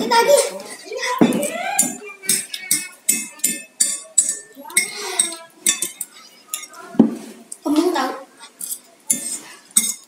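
A metal fork clinking and scraping against a ceramic plate of noodles in quick, irregular little clicks, with one heavier knock about seven seconds in. Children's voices come in briefly now and then.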